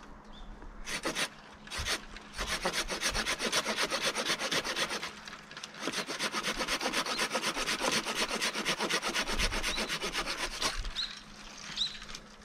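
Hand pruning saw cutting through a cherry tree branch: a couple of starting strokes, then fast, even back-and-forth rasping strokes at about four a second, with one short pause about halfway, stopping shortly before the end.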